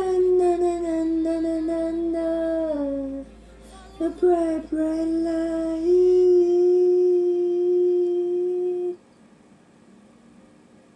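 A single voice singing long held notes, one gliding down about three seconds in, then another long note that stops about nine seconds in.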